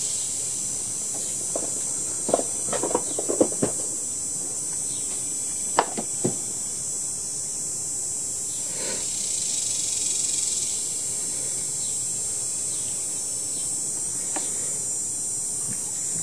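Steady high-pitched chirring of insects. Over it come a few light clicks and taps of small parts being handled on a chainsaw, a cluster between about two and four seconds in and two more near six seconds.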